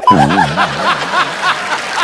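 A person laughing in a long run of rhythmic ha-ha pulses, about three a second, starting abruptly.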